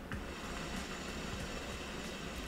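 Faint, steady rumble and hiss of a passing train, coming in through an open window.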